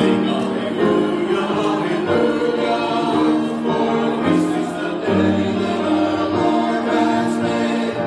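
Robed church choir singing together, the voices holding long notes that move from chord to chord.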